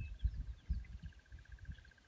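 Wild birds chirping, with a steady, rapid pulsing call at one pitch, over irregular low thumps and rumbles.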